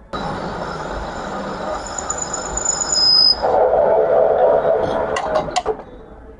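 Metal lathe running while a cutting tool faces a steel washer blank in the chuck. The cut starts with a high-pitched squeal, turns to a coarser, heavier cutting noise about halfway through, and drops off abruptly just before the end.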